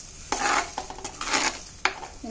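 A stainless steel spoon stirring thick fish curry in a heavy black pot: two wet, scraping strokes, then a sharp clink near the end.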